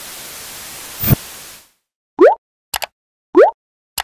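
Subscribe-button animation sound effects: a steady hiss with a sharp click about a second in, then, after the hiss cuts off, two short rising 'bloop' pops a little over a second apart, with quick clicks between and after them.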